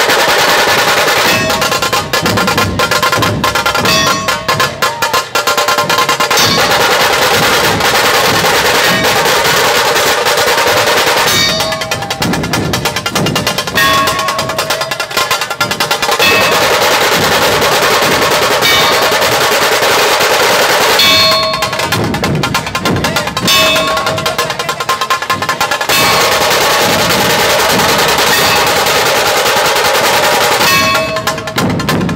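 Dhol tasha ensemble playing: many dhol barrel drums beaten with stick and hand under fast rolls of tasha drums, loud and continuous, with the rhythm pattern changing several times.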